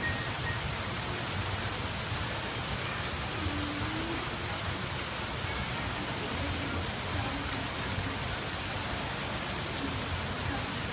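Steady, even rushing hiss of ambient background noise, with no distinct events.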